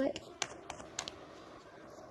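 A handful of light clicks and taps in the first second, then faint room hiss.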